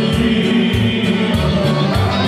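A group of men singing together in chorus, backed by a live band with accordion and a bass line.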